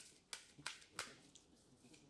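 Faint, soft clicks of a deck of tarot cards being shuffled by hand: about five light snaps in the first second and a half, then quiet.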